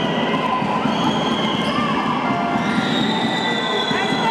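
Basketball game sounds on a hardwood gym floor: the ball bouncing, short squeaks from players' shoes, and a steady background of the crowd in the stands.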